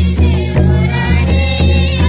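Music: a Mundari wedding song (chumawan song), with voices singing together over a deep, sustained bass line and a steady beat.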